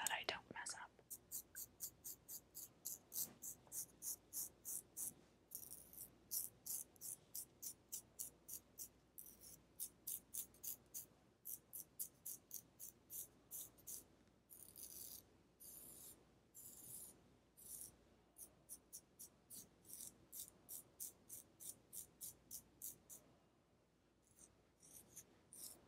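Small sideburn razor (a "baby razor") scraping in short, crisp strokes, a little over two a second, in runs broken by brief pauses.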